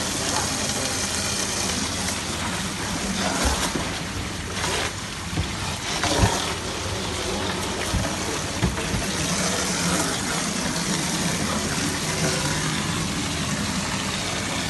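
Water splashing and churning in a shallow tub crowded with flowerhorn cichlids, a steady rushing noise with a few sharp knocks in the middle.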